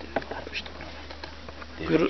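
A flying insect buzzing, with a few light clicks and a short bit of voice near the end.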